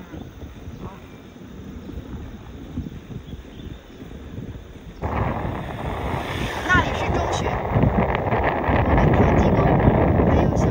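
Wind buffeting the microphone while riding an electric scooter along a road, jumping suddenly louder about halfway through.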